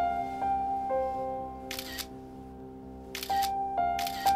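Smartphone camera shutter clicking twice, once just under two seconds in and again a little past three seconds, over soft background music of sustained keyboard notes.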